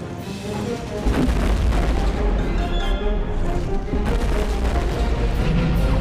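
Animated action-film soundtrack: dramatic music over a heavy, deep booming rumble of explosions that comes in about a second in and carries on.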